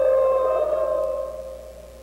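A steady, eerie held tone on the soundtrack, one pitch with an overtone above it, that fades out over the last second or so.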